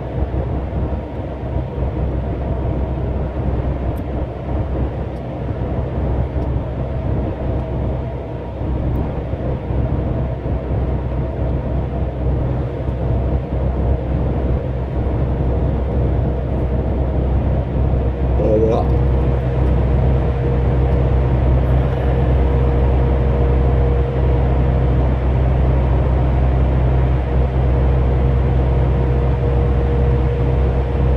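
Cab interior of a MAN TGX 500 hp lorry cruising: a steady low drone from its diesel engine and road noise. About two-thirds of the way through, as the truck enters a tunnel, the sound grows a little louder and a steady higher hum joins it.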